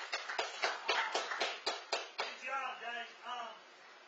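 Hand clapping, quick and uneven at about five claps a second, stopping a little over two seconds in. A short shouted voice follows, about a second long.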